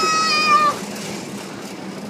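A long high-pitched squeal, one held note that falls slightly and ends under a second in, over a steady rushing noise while the playground roundabout spins fast.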